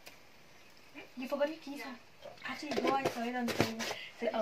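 Voices talking, too indistinct to make out, with a few sharp clicks about three seconds in.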